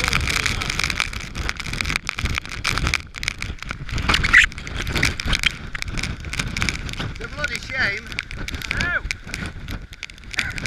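Storm-force wind buffeting the microphone in rough, irregular gusts, with driving rain.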